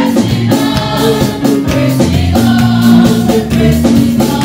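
Gospel choir of women and men singing together in full voice over live band accompaniment, with a steady percussive beat.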